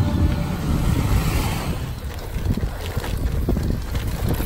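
Wind buffeting the microphone of a camera riding on a bicycle, over the low rumble and scattered rattles of tyres on a cobblestone road.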